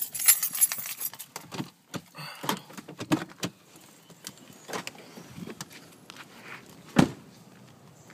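Keys jangling and small clicks and knocks as a driver gets out of a parked car, then a car door shutting with one loud thud about seven seconds in.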